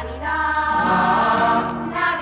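Choral music: a choir singing held notes in harmony.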